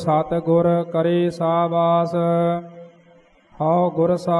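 A solo voice recites Sikh scripture (Gurbani) in slow santheya-style chant, holding its lines on a steady pitch. It pauses for about a second near the end before the next line begins.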